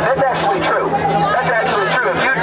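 Speech only: a man's voice amplified through a handheld microphone and portable loudspeaker, over crowd chatter, with a steady low hum underneath.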